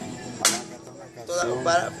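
Acoustic guitar playing, with a single sharp crack about half a second in that is the loudest sound; a man's voice starts speaking near the end.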